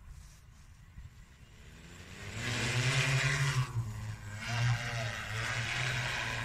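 Joyance JT10L-606QC agricultural sprayer drone's motors and propellers spinning up about two seconds in as it lifts off, then a steady propeller hum whose pitch wavers up and down as it climbs and holds a hover.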